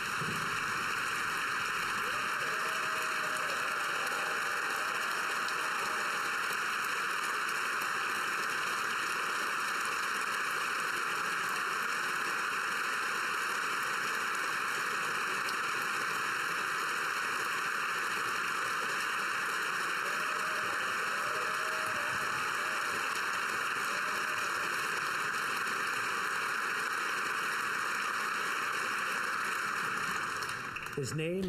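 A large crowd of parliamentarians giving a standing ovation: steady, even applause that holds at one level, with faint voices rising in it near the start and again about two-thirds through.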